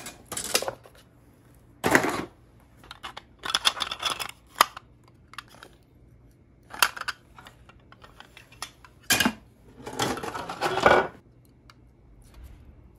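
Hard plastic 3D-printed parts clicking and clattering as they are rummaged out of a clear plastic storage box and handled, in irregular short bursts with the busiest clatter near the end.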